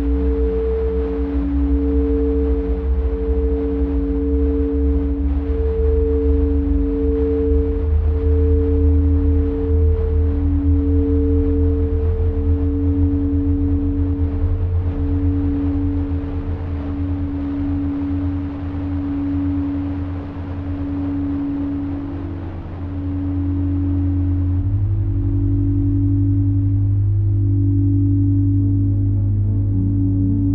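Crystal singing bowls played with wands, two bowls holding steady overlapping tones with a slow pulsing waver; about three-quarters of the way through, the higher tone fades and a new bowl tone joins. Beneath them a low modular synthesizer drone runs and shifts to a different low note near the end.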